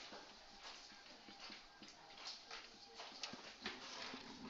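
Faint, irregular short scratches and squeaks of a marker writing letters on a whiteboard.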